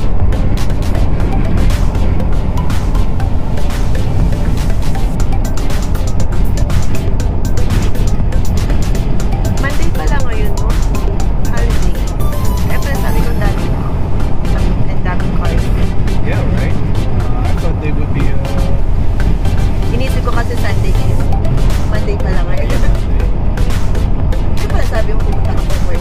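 Steady low road and wind rumble inside an Acura's cabin at interstate speed, with music playing over it.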